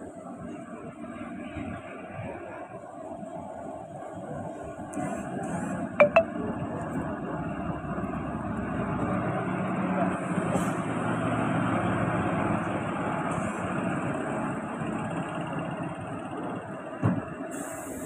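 Passenger train running along a station platform, heard from a coach door: a steady rumble of wheels and coaches that grows louder through the middle, with a sharp clank about six seconds in and another near the end.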